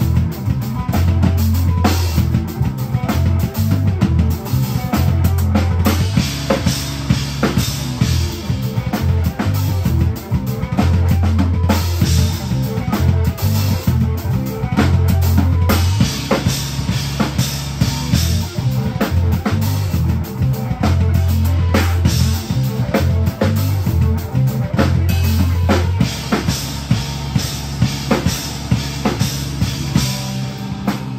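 Rock band playing live, with the drum kit loudest: kick, snare and cymbal hits throughout, over electric guitars and a bass guitar holding long low notes.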